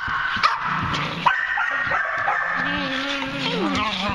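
A dog whining in a long, high, steady tone, broken by a couple of sharp yips, with a lower whine that slides downward near the end.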